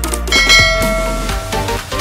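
Electronic background music with a bell-like ding about a third of a second in that rings out over about a second: the notification-bell chime of a subscribe-button animation.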